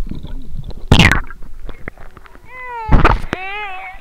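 Pool water splashing hard against the camera as it breaks the surface, twice, and a young child's long high-pitched squeal that rises and then falls, from about two and a half seconds in.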